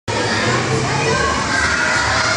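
Hubbub of children playing and voices in an indoor play centre.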